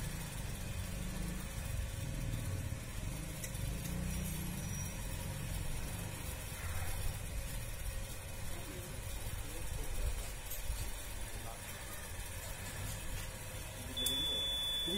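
Portable air compressor running with a steady low hum, pumping air to the tyre while it is being inflated.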